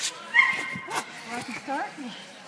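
Dog yipping and whining excitedly, a few short calls that rise in pitch, after a sharp knock early on.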